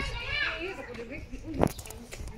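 Children's voices in the background, chattering and playing, with a single sharp knock about one and a half seconds in.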